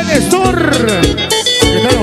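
Live band music in an instrumental passage between sung verses: a lead guitar playing bending, gliding notes over bass and a steady drum beat.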